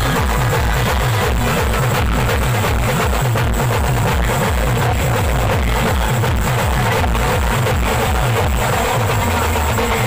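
Adivasi band music played loud, led by slung snare drums and a large bass drum beating a fast, steady rhythm.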